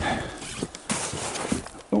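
Footsteps wading through knee-deep snow, a few irregular crunching steps over a steady rustle of snow against clothing.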